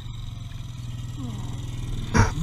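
Dirt bike engine idling steadily.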